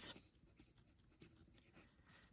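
Faint scratching of a pen writing on planner paper, in short, irregular strokes.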